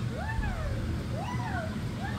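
Two meow-like calls, each rising and then falling in pitch, with another starting near the end, over a steady low rumble.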